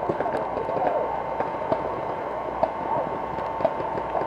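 Many paintball markers popping in quick, irregular shots across the field, with distant shouting from players.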